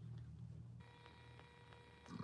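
Near silence. About a second in, a faint steady electronic tone sets in, several thin pitches together, with faint regular ticks running through it.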